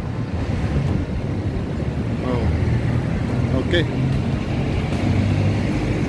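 A motor vehicle engine running steadily at low revs, a continuous low rumble.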